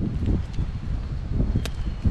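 Wind rumbling on the microphone of a handheld camera, with faint rustling and one sharp click about one and a half seconds in.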